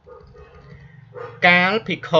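A voice talking, faint at first, then loud and drawn out from about one and a half seconds in.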